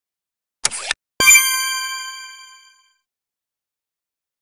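A brief rushing sound effect, then a bright bell-like ding that rings out and fades over about a second and a half: a cartoon success chime as the division sign passes to the next stage and the light turns green.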